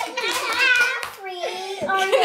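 Children's excited voices, high and unworded, with a few hand claps in the first half second.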